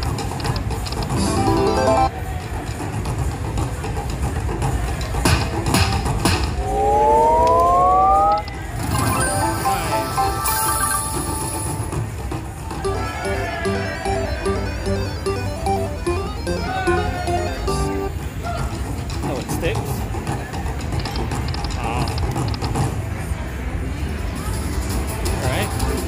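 Big Fu Cash Bats video slot machine playing its bonus sound effects and jingles over casino noise: a rising sweep about seven seconds in, then a run of evenly repeated beeping tones as coin values land and the win total climbs.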